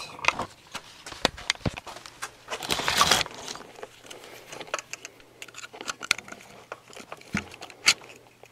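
Small metal parts being handled: light clicks and scrapes as a cut-down nail is test-fitted into a metal fitting, with a longer scrape about three seconds in.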